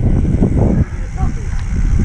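Wind rumbling on the microphone of a camera carried on a moving bicycle, a steady low noise, with voice-like sounds over it in the first second.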